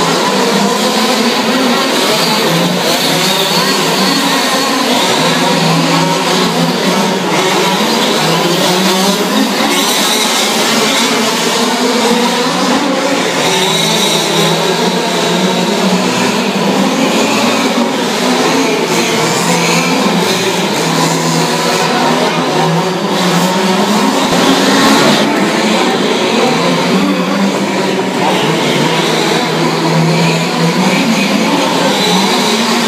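Several large-scale RC off-road cars with small two-stroke petrol engines racing together, their engines revving up and down continuously with many overlapping, shifting pitches.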